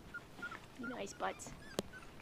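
Silken Windhound puppies whimpering in several short, high squeaks, with one sharp click near the end.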